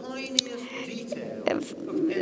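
Quiet speech: a voice held on one level pitch for over a second, well below the surrounding talk.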